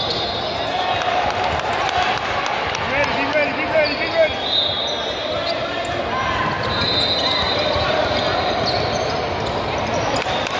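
Indoor basketball game sound: a basketball bouncing on the hardwood court, several short high-pitched sneaker squeaks, and a steady babble of players' and spectators' voices echoing in a large gym. The voices get louder about three to four seconds in.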